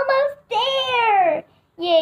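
A young girl's voice: a short spoken bit, then one long, drawn-out sung note of about a second whose pitch rises slightly and then falls.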